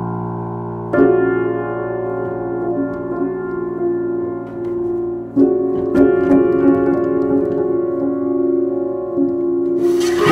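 Slow piano music: sustained chords struck about a second in and again about five seconds in, each left to ring on. A short noisy burst comes right at the end.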